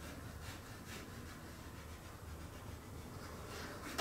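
Faint scratching of coloured pencil strokes on toned drawing paper, short hatching strokes over a low steady room hum.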